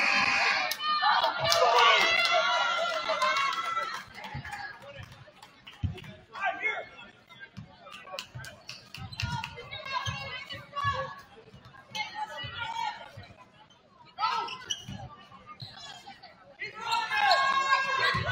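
Basketball dribbling on a hardwood gym floor, a run of short low thumps under the game. Players and spectators shout and call out at intervals, loudest in the first few seconds.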